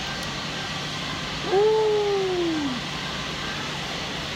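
A man's voice making one long, falling hum, like a thoughtful "hmmm", about one and a half seconds in, over a steady background hiss.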